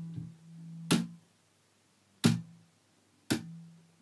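Electric bass guitar: three sharp percussive hits on the strings, roughly a second apart, each followed by a short low note that is cut off. These are left-hand hits, the hand striking and then staying on the strings to mute them, the technique used in slap bass. A held low note dies away at the start.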